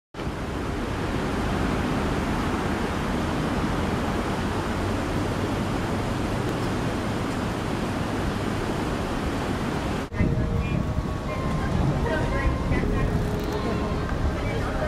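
Steady rushing noise with no distinct events. After a cut about ten seconds in, people's voices are heard over the outdoor background.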